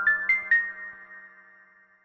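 Closing bars of background music: a run of short struck notes climbing in pitch, about four a second, ending on a last note that rings and fades out over about a second.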